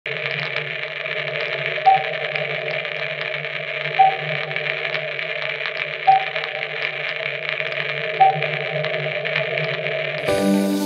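Muffled, steady radio-style static hiss, lo-fi and thin, with a short beep about every two seconds, four beeps in all: a static sound effect standing in for an untuned set.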